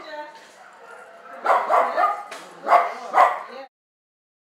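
Husky–malamute–collie mix dog vocalising: a faint whine, then two loud bursts of yelping barks about a second apart. The sound cuts off just before the end.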